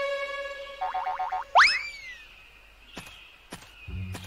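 Cartoon soundtrack: a held musical note that wavers just before it ends, then a boing sound effect about one and a half seconds in, a quick swoop up in pitch that falls away.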